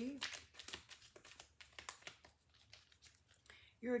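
Tarot cards being handled: light, irregular rustling and flicking of card stock, densest in the first second and sparser after.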